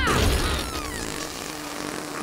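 Cartoon sound effect of a honey badger's stink blast: a sudden noisy burst of gas that fades away over about a second.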